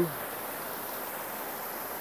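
Water running over a small stone cascade, a steady rushing hiss.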